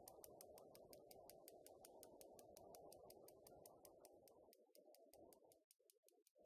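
Faint, rapid, even ticking of a bicycle's rear freewheel as the bicycle is pushed along on foot, several clicks a second over a quiet low hum.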